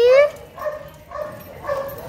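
Small dogs yipping: a high, wavering whine ends just after the start, then three short yips follow about half a second apart.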